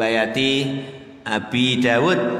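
A man chanting a repeated Arabic phrase in a sing-song recitation, the syllables drawn out on held pitches, with a short break about a second in.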